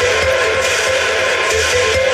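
Techno from a DJ set: steady held tones over a bass that comes and goes in repeated pulses, at a loud, even level.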